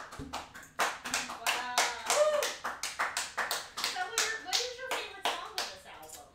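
Hand clapping, a few irregular claps a second, with a voice over it: applause at the end of an acoustic guitar song.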